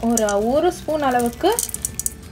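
A person speaking, with a few light clicks as whole black peppercorns are tipped from a small steel cup into a stainless steel pot of frozen pumpkin cubes near the end.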